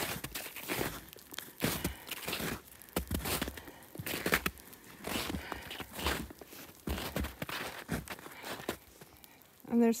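Footsteps on packed snow, about two steps a second, from a hiker wearing traction spikes.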